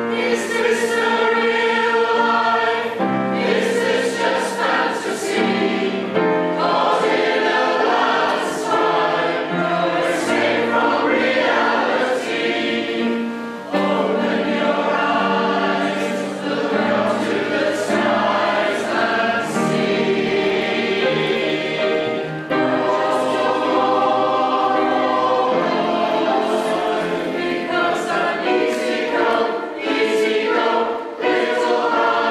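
Large mixed choir of men and women singing together in long held phrases.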